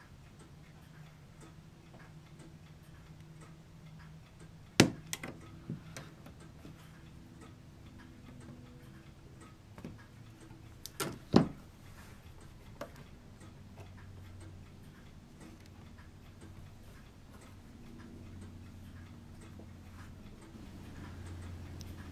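A few sharp clicks and taps of a plastic model-kit sprue being handled and worked with a hobby knife, irregularly spaced, the loudest about five seconds in and again about eleven seconds in, over a low steady hum.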